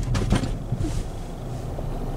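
Cabin noise of a 2022 Nissan Qashqai during an emergency stop: the low road and engine rumble dies away as the car brakes hard, with a few faint clicks just after it starts.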